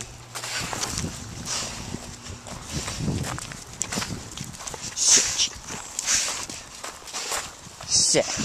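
Close scuffing and rustling on gravel while a black dog is petted, with a few short hissy puffs about five and six seconds in.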